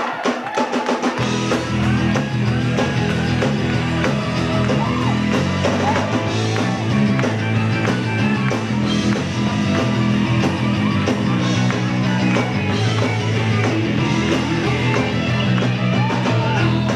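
Live rock band playing a song's instrumental opening, with drum kit and electric guitar; bass and the full band come in about a second in, over a steady driving beat.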